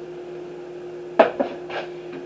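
Metal loaf pan set down on a glass-ceramic electric cooktop: a sharp clatter a little over a second in, then two lighter knocks as it settles. A steady hum runs underneath.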